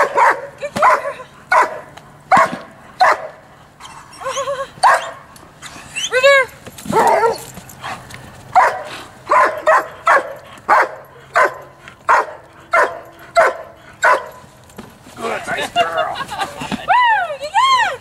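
A dog barking repeatedly in protection work at a helper standing in a hiding blind, about one and a half barks a second with brief lulls. A couple of higher barks that rise and fall in pitch come about a third of the way in and near the end.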